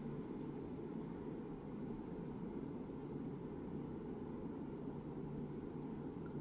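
Quiet, steady room tone: a low, even background hum with no distinct events.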